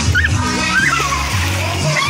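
Water splashing as children play in a small pool, with children's voices calling out over music that has a steady bass line.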